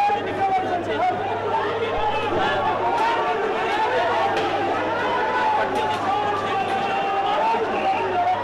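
Crowd of men shouting and calling out over one another in a street, with a few faint sharp cracks in the background.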